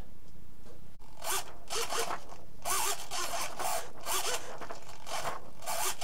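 Small RC hobby servos whirring in repeated short bursts as they drive the test airplane's control surfaces, the gear buzz rising and falling in pitch with each movement.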